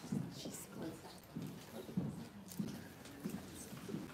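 Faint, indistinct murmured voices in a large room, with a few small knocks and handling sounds.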